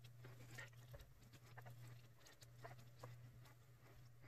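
Near silence: a low steady hum with faint, irregular small ticks from a fine paintbrush and a small plastic model part being handled.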